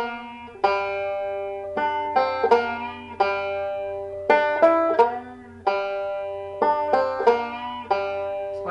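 Five-string resonator banjo picked three-finger style: short runs of quick plucked notes, each ending on a note left to ring, repeated several times about a second apart. This is the tune's ending phrase played with the fingering that varies a single note.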